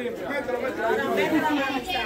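Indistinct chatter of several voices talking at once.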